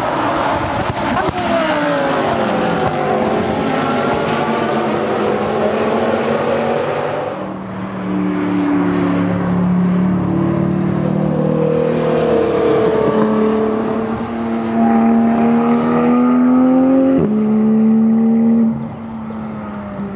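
Sports car engines on a race track. For the first several seconds an engine note falls in pitch. After a sudden change, a steadier engine note holds and slowly climbs, and it changes abruptly again near the end.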